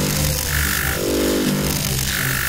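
Loud hissing, buzzing scanning sound effect that starts abruptly, with a short high tone about half a second in and a lower hum about a second in.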